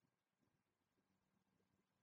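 Near silence: faint background noise with a weak low hum.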